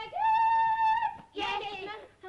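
A woman's voice calling out in a long, drawn-out shout that swoops up in pitch and is held for about a second. Brief speech in a lower voice follows.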